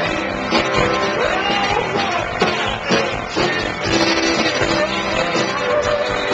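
Rock band playing live: amplified electric guitar, drums and a singing voice.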